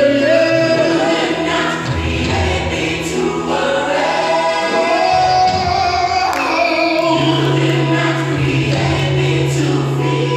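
Gospel music: a choir singing over sustained bass notes.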